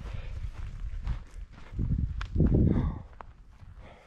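Footsteps of a hiker walking over dry grass and stones, irregular scuffs and crunches with a louder stretch about two seconds in.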